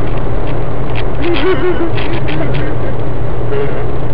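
Steady engine and road noise of a car cruising at motorway speed, heard inside the cabin as a loud low hum.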